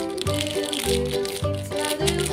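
Background music with a steady bass beat and rattling, shaker-like percussion.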